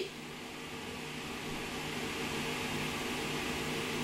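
Steady room noise: an even hiss with a low, steady hum underneath, and no other events.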